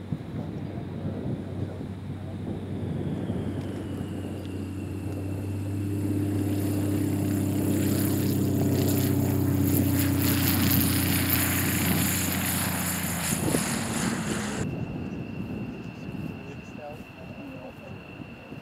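Extra 330LX aerobatic plane's six-cylinder piston engine and propeller at full takeoff power. It grows louder as the plane races past on its takeoff roll, peaking in the middle, then falls away as it climbs off; the high hiss over the engine cuts off suddenly about three-quarters of the way through.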